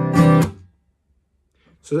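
Taylor acoustic guitar strummed on a Cadd9 chord: a hammered-on strum rings, an up-strum follows just after the start, and the strings are stopped dead by the hand about half a second in. This is the 'hammer on, up, stop' of the strumming pattern.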